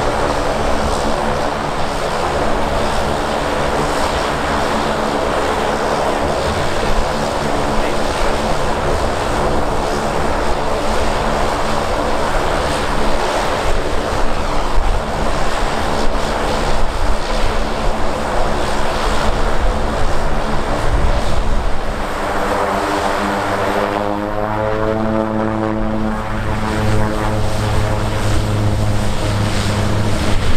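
Twin Garrett TPE331 turboprop engines of an Ameriflight Fairchild SA-227AT Expediter running as the aircraft taxis and turns onto the runway: a steady propeller and engine drone. About three-quarters of the way through, the tone sweeps and shifts as the plane turns, and it grows louder near the end.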